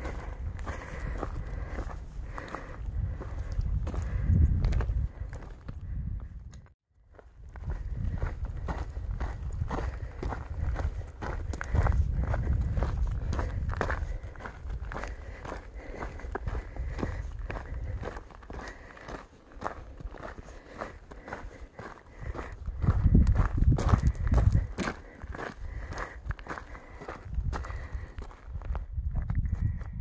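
Footsteps of a hiker walking steadily on a dirt and rocky mountain trail, under a low rumble that swells at times. The sound breaks off for a moment about seven seconds in.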